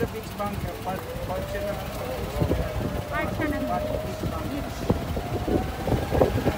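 A motor's steady whine, rising slowly in pitch, over a low rumble.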